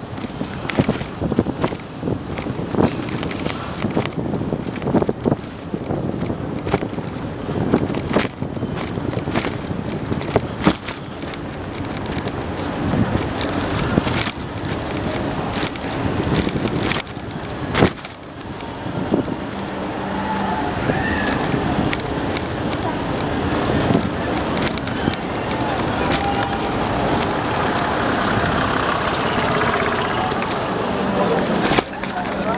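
Bicycle ride on a city street at night: wind on the microphone, traffic and many sharp knocks and rattles from bumps in the road through the first half. In the second half the knocks thin out and the voices of people nearby slowly grow louder.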